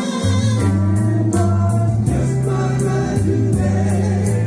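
Men's vocal group singing in harmony over a band backing, with a bass line and a steady cymbal beat.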